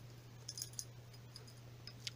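A few faint, light metallic clicks and taps as a lock cylinder is handled and worked into the case of a Banham M2002 mortice deadlock.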